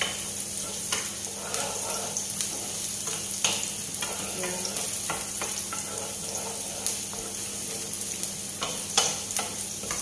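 Chopped onions sizzling in hot oil in a frying pan, being sautéed until brown, while a wooden spoon stirs them with irregular scraping clicks against the pan, the sharpest one near the end.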